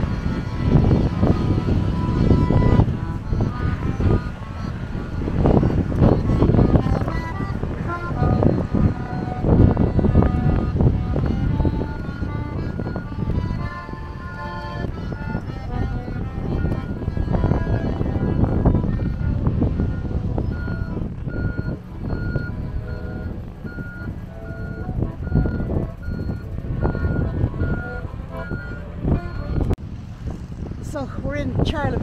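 Heavy, gusting wind rumble on the microphone, with a tune of short notes over it. In the last third a single high beep repeats a little under twice a second, stopping just before the end.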